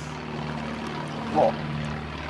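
An engine's steady low drone, one even pitch throughout, with a short spoken "not much" about a second and a half in.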